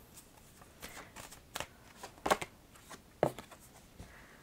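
A deck of oracle cards being shuffled and handled by hand: a series of irregular, short card snaps and slides, loudest a little after two seconds in.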